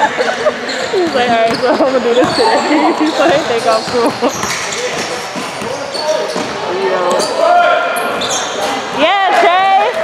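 A basketball being dribbled and bounced on an indoor court, with the sharp strokes of play throughout. Voices of players and people on the sidelines carry through the echoing hall, and a rising-and-falling voiced call comes near the end.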